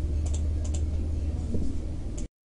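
A steady low hum with a few short, light clicks scattered over it.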